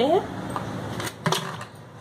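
Steel cooking pot lifted off a gas stove and set down on a counter, giving two sharp knocks about a second in.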